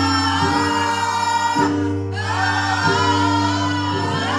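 A woman singing a gospel praise song through a microphone over sustained instrumental chords. Her voice breaks off briefly about halfway, then comes back in.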